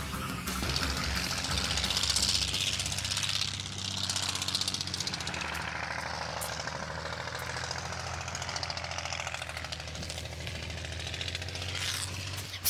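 A motor running steadily with a fast rattle and hiss over a low hum. It is loudest for the first few seconds, then settles slightly quieter.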